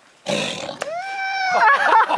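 Tiger snarling at feeding time: a sudden loud rasping burst, then a high cry that rises and falls and excited voices.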